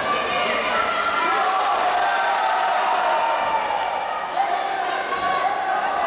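Crowd of spectators shouting and calling out, many voices overlapping continuously throughout.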